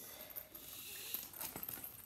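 Bag strap rustling as it is pulled through its adjuster buckle to shorten it, with a couple of small clicks from the buckle about halfway through.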